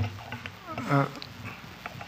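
A short hesitant "ah" spoken into a microphone about a second in, over a low steady room hum with a few faint clicks.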